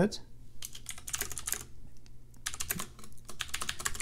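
Typing on a computer keyboard: quick runs of keystrokes in several short bursts, with brief pauses between them.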